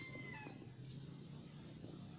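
A rooster crowing, the call ending about half a second in, followed by a steady low hum of street background.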